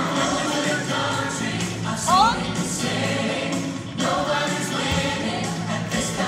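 Mixed show choir singing an upbeat song over steady low bass notes, with a quick rising slide about two seconds in.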